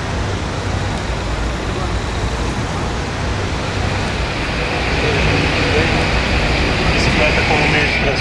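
City road traffic: car engines running close by in a line of queued cars, with a steady low rumble. A higher hiss grows louder from about five seconds in, and voices come in near the end.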